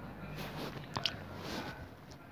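Quiet breathing and mouth noises close to the microphone, with one sharp click about halfway through.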